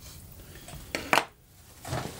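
A few light clicks and handling noises from needle-nose pliers and solid-core wire being threaded through the pin tabs of a preamp tube socket, the loudest click just past a second in.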